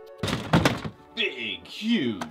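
A single heavy thunk, as of a large plastic toy being handled in a plastic storage bin, followed by a man starting to speak.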